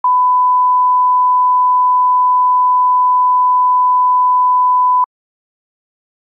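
A steady 1 kHz line-up tone, the reference tone that goes with colour bars, held at one pitch for about five seconds and then cut off suddenly.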